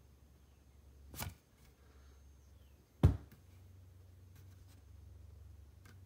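Handling noise on the phone filming: a short rub about a second in, then a sharp, loud knock about three seconds in, over a low steady hum.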